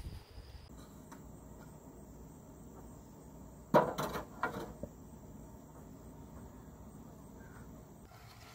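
Insects trilling steadily at a high pitch in the background. About four seconds in comes a single sharp knock, followed by a few lighter clatters.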